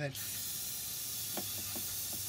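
Aerosol can of CRC throttle cleaner spraying a steady hiss into a carbon-fouled electronic throttle body. The spray starts just after a spoken word and does not let up.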